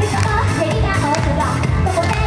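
Upbeat Japanese idol pop song performed live: a young woman's voice singing over a backing track with a steady dance beat.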